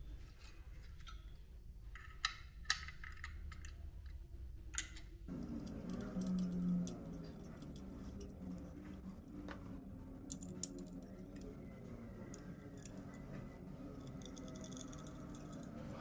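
Faint metal clicks and clinks from steel mounting brackets being handled and fitted onto a Deepcool Gammaxx 400 Pro tower CPU heatsink. A few sharp clicks come in the first five seconds, followed by quieter handling noise.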